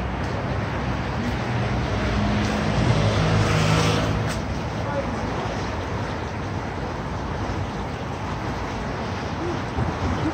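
Steady city street traffic noise. A vehicle's low engine hum swells and passes, loudest about three to four seconds in.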